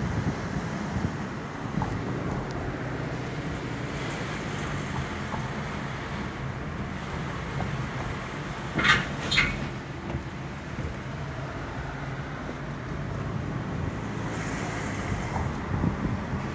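Steady low hum of a car heard from inside the cabin while it drives slowly. There are two brief, sharper noises about nine seconds in.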